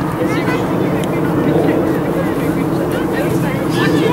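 A steady low drone of a running engine or machine, with short distant shouted calls of voices over it.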